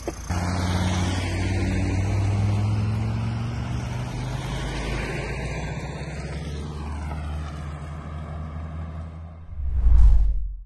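Motor vehicle engine running steadily with road noise as the vehicle drives along, ending in a short, loud low rumble.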